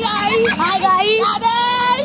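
A group of boys shouting and chanting together in high, excited voices, the calls gliding up and then held as long drawn-out notes near the end.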